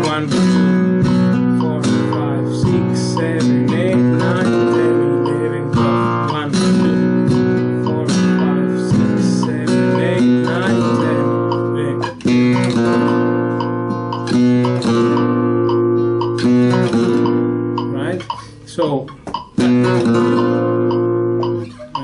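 Nylon-string flamenco guitar played in solea por buleria rhythm: rasgueado strums and accented chords that ring between the strokes. The strums are aimed at the bass strings rather than the trebles, the proper way for a fuller, weightier rhythm. There are a few short breaks in the playing near the end.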